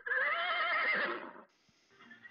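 Sound effect of an animal call: one wavering cry about a second and a half long, sliding slightly down in pitch near its end.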